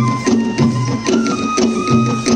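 Traditional Bastar folk music accompanying a gedi stilt dance: drums beating a steady rhythm of about three strokes a second under a sustained melody line that steps up in pitch about a second in.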